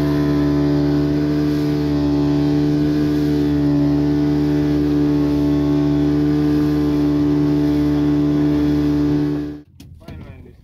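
Outboard motor of a small fishing boat running at a steady cruising speed, its pitch even throughout. It cuts off suddenly near the end.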